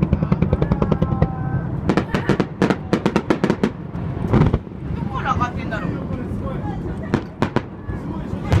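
Aerial fireworks display going off: a rapid run of bangs, densest between about two and four seconds in, one heavier bang around four and a half seconds, and a few more reports near the end.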